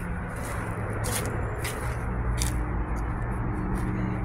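Footsteps crunching on dry, parched grass, a few crisp scrapes about a second in and again past the middle, over a steady low hum of distant traffic.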